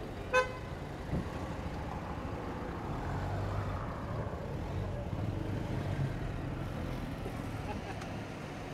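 Car engine idling close by, a steady low hum that grows a little stronger about three seconds in. A short, high pitched toot sounds just after the start.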